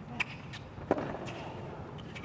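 Tennis ball struck by rackets in a rally on a hard court: two sharp hits about two-thirds of a second apart, the second the louder.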